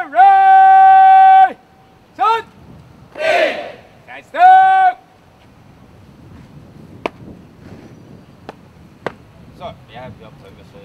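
A drill instructor shouting parade commands: a long drawn-out call held for over a second, then short sharp shouts, with a brief burst of many voices shouting together in between. After about five seconds the shouting stops, leaving a few sharp clicks or knocks.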